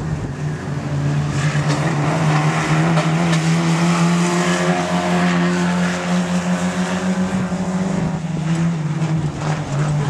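Modstox stock cars racing on a dirt oval, their engines giving a loud, continuous drone whose pitch climbs a little over the first few seconds and eases back later.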